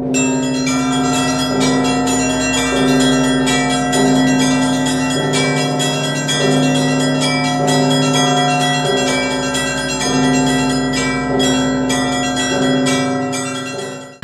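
Church bells ringing, many bells struck in quick succession over held lower tones, loud and continuous, stopping abruptly near the end.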